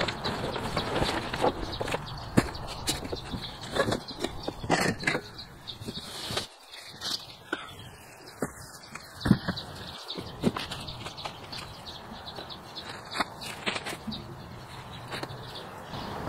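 Unpacking noise as a new Ryobi 40V electric mower is lifted out of its cardboard box: cardboard and plastic wrap rustling with frequent knocks and thumps, busiest in the first six seconds, then fewer, lighter knocks.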